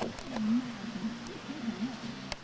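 A low, wavering moaning voice, its pitch sliding up and down without forming words.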